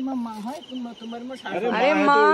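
Women's voices talking, rising into a loud, drawn-out call near the end, over faint rhythmic insect chirping.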